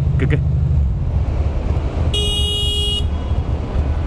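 2006 Ducati Monster 620's air-cooled V-twin idling, with a single horn blast about two seconds in that lasts about a second.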